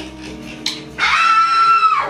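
Music in the background, then about a second in a high-pitched squeal-like vocal noise, one note held steady for about a second.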